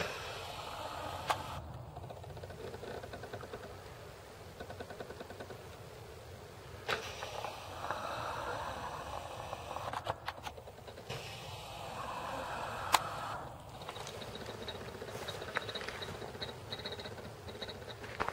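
Footsteps and rustling on a gravel forest path, with handheld-camera handling noise. Faint and uneven, with a few sharp clicks.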